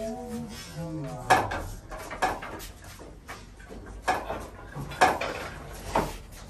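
Wooden boards and offcuts knocking and clattering together as they are pulled from and sorted on a lumber rack: a run of sharp knocks roughly a second apart, the loudest about a second in and about five seconds in.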